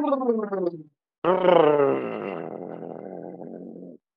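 A long, loud voiced exhale, falling in pitch and trailing off into breath, starting about a second in after a shorter falling voiced sound. It is the breath blown out to close an EFT tapping round.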